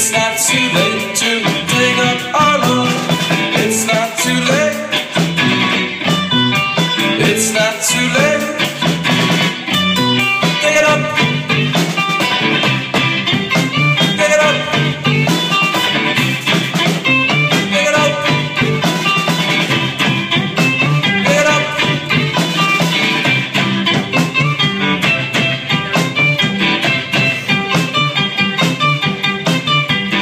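A rock band playing live with electric guitars and a drum kit, a steady, loud instrumental passage with driving drums, the song's intro before the vocals come in.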